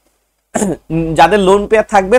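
A man lecturing, with a short throat clear about half a second in, just before he starts speaking again.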